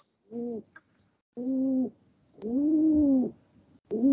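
Pigeon cooing: three separate coos, each gently rising then falling in pitch, the last one the longest at about a second.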